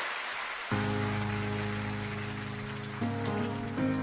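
Piano playing slow sustained chords, the opening of a live ballad performance, over a steady hiss. The first chord comes in just under a second in, and the chords change about three seconds in.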